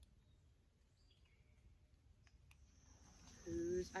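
Quiet woodland ambience with a few faint bird chirps and a couple of small clicks. In the last second or so a steady high insect drone comes up and a voice starts speaking.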